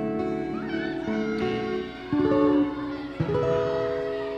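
Steel-string acoustic guitar playing the closing chords of a song, the notes held and ringing; a last chord is struck about three seconds in and left to ring out, fading.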